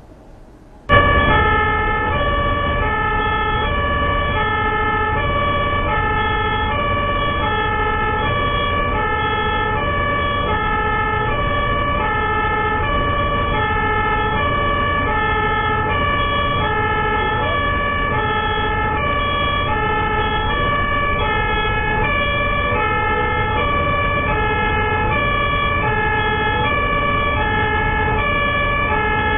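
Two-tone emergency-vehicle siren starting about a second in, alternating between a high and a low note in an even, steady rhythm over a low engine and road rumble.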